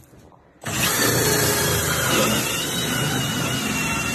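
Cordless drill driving a hole saw through a drywall ceiling. The drill starts suddenly under a second in and runs steadily under load, with a slightly wavering high whine.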